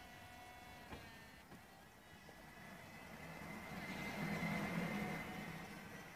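Audi A4 Cabriolet's power soft top folding open: the electro-hydraulic roof pump whines steadily, with a click about a second in. The running sound then swells louder around four to five seconds in and eases off again as the roof keeps moving.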